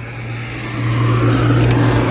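Car engine running steadily, heard from inside the cabin, growing louder about a second in.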